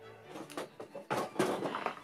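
Doll packaging being handled: a few short rustles and scrapes of the cardboard box as a hand reaches inside it.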